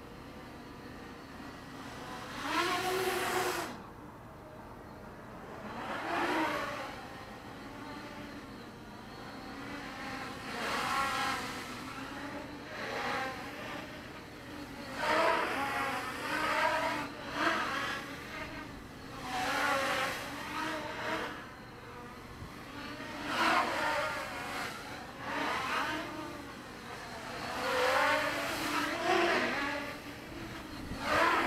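Quadcopter with four brushless motors (Avroto 770kv on a 4S pack) whining in flight. The pitch and loudness swell and fade every few seconds as the drone throttles, banks and passes near and away.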